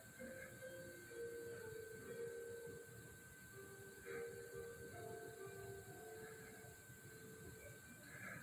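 Faint held musical notes at a few changing pitches, coming from a choir concert recording played through a TV, over a steady high-pitched whine.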